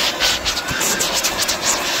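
Handheld leaf blower running steadily, its air stream blowing bees off a piece of wild honeycomb.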